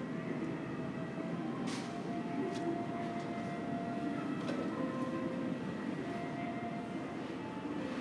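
Steady low rumble of airport terminal ambience, with faint held tones and a few light clicks, the sharpest about two seconds in.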